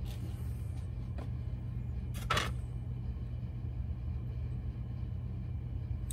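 Steady low background hum, with a couple of faint clicks and one sharper clack a little over two seconds in: rocks being handled in a plastic container of water.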